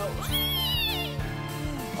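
A singer's shrill 'EEEEEEEE' squeal imitating a pig, over musical accompaniment. It sweeps up sharply, holds high for about a second, then slides back down.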